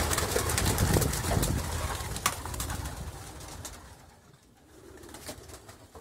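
Racing pigeons taking off inside the wooden loft: a flurry of wing flaps with sharp wing claps during the first couple of seconds, fading away as the birds leave, with pigeons cooing.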